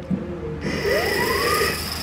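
Flow rushing through a PVC pipe into a small turbine-type water flow sensor, starting about half a second in as a steady hiss. Over it a whine rises in pitch for about a second as the sensor's rotor spins up.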